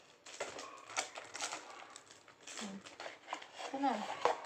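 A small cardboard box being handled and opened by hand: irregular light clicks, taps and rustles of the cardboard flaps and the packing inside.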